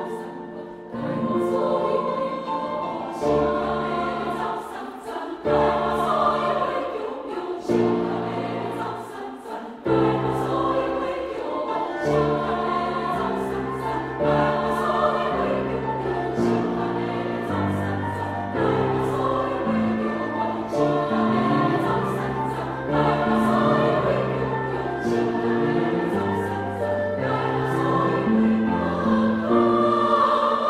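Women's choir singing a choral arrangement of a Taiwanese opera seven-character tune in Taiwanese Hokkien, in sustained chords with piano accompaniment.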